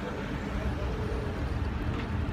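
Steady low rumble of outdoor background noise, with a faint voice in the background.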